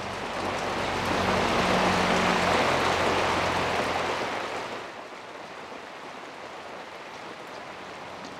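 Rain falling, heard as a hiss that swells over the first few seconds and fades about five seconds in.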